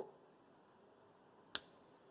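Near silence, broken once, about one and a half seconds in, by a single sharp click from a whiteboard marker being handled.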